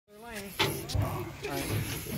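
People's excited voices calling out, with a sharp knock about half a second in and a few fainter knocks after it.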